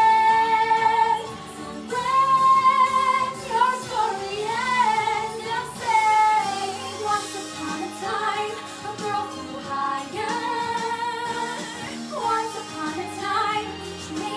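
A woman singing a pop song with musical accompaniment. She holds long notes with vibrato; a held high note ends about a second in, and after a brief breath the next phrase begins.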